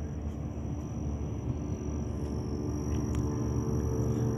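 Outdoor ambience: a steady low rumble with a faint hum, slowly getting louder, and a thin steady high tone above it.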